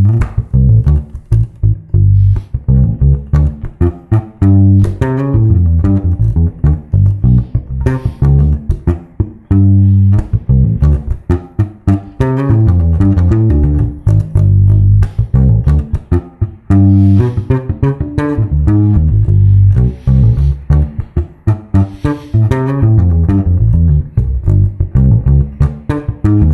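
Four-string Precision-style electric bass played fingerstyle: a D minor groove with phrases of a fast lick worked into it, quick runs of notes between strong, held low notes.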